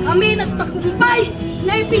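A woman speaking loudly in short, forceful phrases, over background music with steady held notes.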